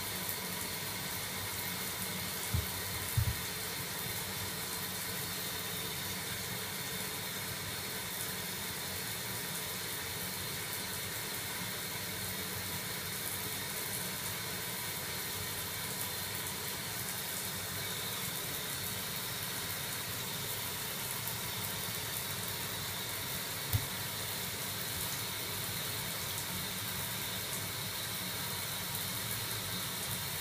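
Steady, even rushing of running water in a bathtub or shower, with a few soft low thumps about two to three seconds in and again near the end.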